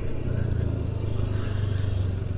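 Motorcycle engine running steadily at low speed, a constant low hum with traffic noise around it.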